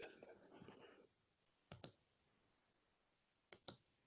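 Faint computer mouse clicks over near silence: a quick double click a little under two seconds in, and another about two seconds later.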